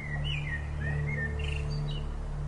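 A songbird sings a short warbling phrase of gliding whistled notes, ending in two brief higher chirps. It sounds over a steady low background music drone.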